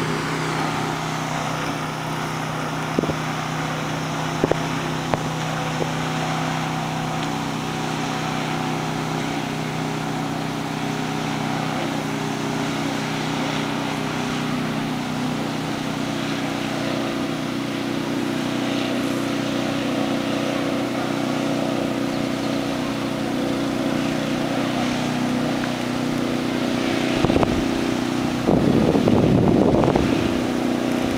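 Motorboat engine of the tow boat droning steadily far below, heard from high above along with wind on the microphone. The wind noise grows louder and more irregular near the end.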